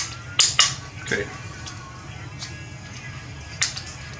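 AR-15 fire-control group (hammer, trigger and safety selector in the lower receiver) clicking during a function test: sharp metallic clicks, three in quick succession at the start and one more near the end.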